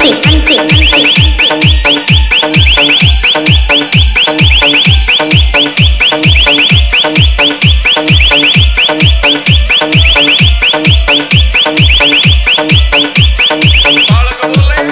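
Indian DJ hard-bass electronic remix: a deep kick drum about twice a second, each hit dropping in pitch, under a fast, repeating high alarm-like synth chirp that cuts off at the very end.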